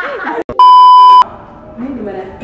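A loud, steady electronic beep at one high pitch, edited into the sound track like a TV test tone. It starts about half a second in, just after a brief cut in the sound, and lasts about half a second. Laughter and chatter come before it.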